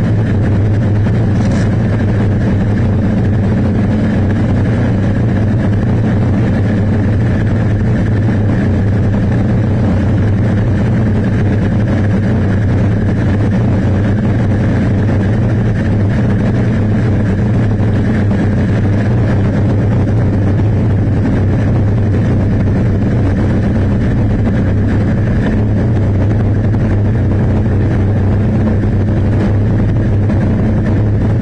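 Motorcycle engine idling steadily with an even low hum, unchanged in level, while the rider gets ready to move off.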